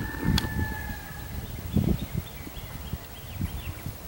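A man swallowing mouthfuls of beer from a glass mug: a series of soft, low gulps. Faint bird chirps sound in the background, and a faint steady high tone fades out in the first second and a half.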